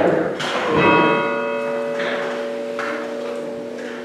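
A single bell stroke, about a second in, ringing on and slowly fading, its higher tones dying away first.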